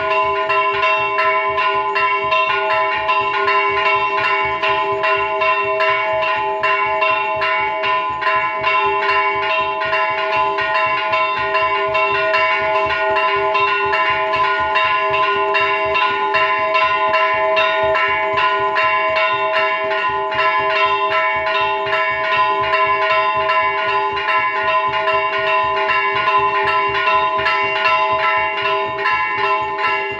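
Metal temple bells rung over and over, many strikes a second, so their ringing tones run together into one unbroken, loud clangour.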